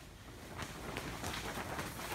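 Plastic sheeting and tarp rustling in the wind, a steady crinkling noise with faint crackles.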